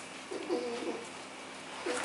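Brown bear cubs whining with a cooing, pitched call: one short call about half a second in and a longer one starting near the end.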